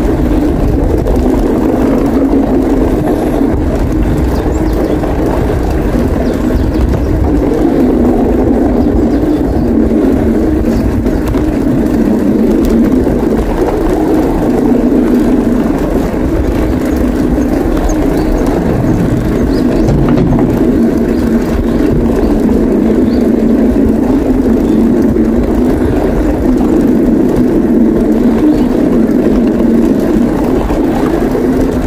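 Steady rush of wind on the microphone mixed with the rumble of bicycle tyres rolling along a boardwalk deck, a loud, even noise with no breaks.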